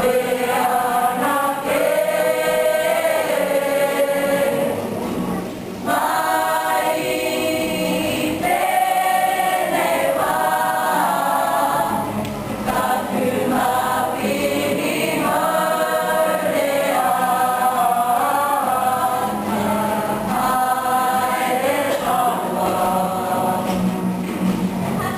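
Kapa haka group singing a Māori waiata in unison, accompanied by acoustic guitar, with a short break between phrases about five seconds in.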